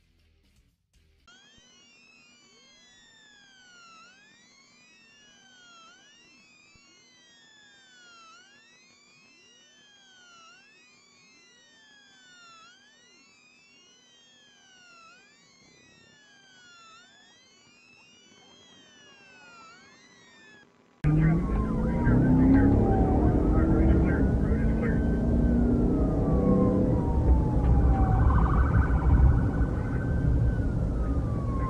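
Faint police sirens, several overlapping, each rising and falling every second or two. About two-thirds of the way through, a sudden cut to loud vehicle rumble and road noise, with a police siren in a slower rise and fall.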